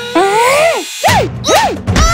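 Cartoon sound effects: a run of squeaky pitched swoops, each rising and then falling, one after another about every half second. A hit comes about a second in, as the character is struck.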